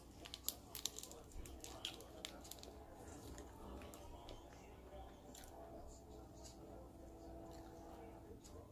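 Faint crinkling and small sharp clicks of a plastic soy sauce packet being torn open and squeezed, thickest in the first few seconds, over a faint steady hum.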